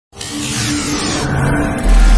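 Logo-intro sound design: engine-like car sound effects with a falling whoosh sweep. It ends in a deep bass hit just before two seconds, the loudest moment.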